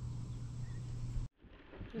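A steady low hum over faint outdoor background, cut off suddenly a little over a second in. After a brief near-silent gap, faint wind noise on the microphone begins, and a man starts to speak at the very end.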